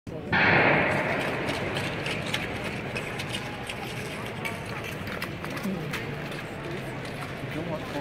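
Loud starting signal for a short track speed skating race about a second in, echoing in the rink, then a steady background of the arena with faint voices.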